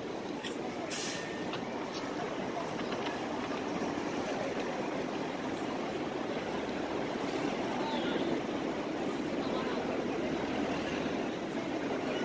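A train running on an elevated railway line overhead: a steady rumble that builds a little toward the middle and holds, over street voices.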